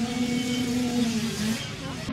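Dirt bike engine running at steady throttle, its pitch sagging slightly about one and a half seconds in, with crowd voices behind it.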